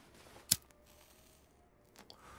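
A single short, sharp click about half a second in, against faint quiet background.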